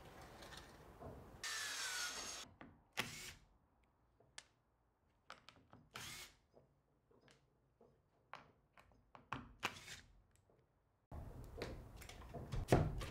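Cordless drill driving screws into a galvanised steel sheet on plywood, in a series of short bursts with brief pauses between them. It is fairly quiet, and there is a longer run of about a second near the start.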